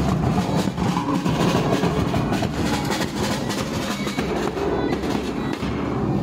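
A wedding band's large marching bass drums beaten hard in a fast, steady rhythm, with bagpipes sounding alongside.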